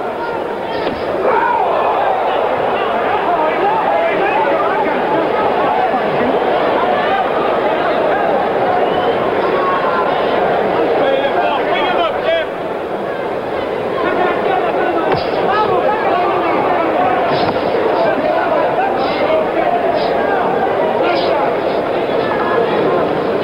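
Boxing arena crowd: a steady din of many voices talking and calling out at once, with a few short sharp sounds in the last seconds.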